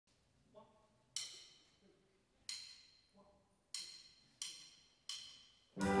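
A big band's count-in: five sharp clicks that ring briefly, two slow ones and then three quicker ones, before the full band comes in loudly with brass near the end.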